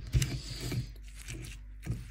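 Stone pestle grinding and crushing boiled green chilies and tomatoes on a flat stone mortar (ulekan on cobek), with irregular scraping strokes and knocks. The sharpest strokes come just after the start and near the end.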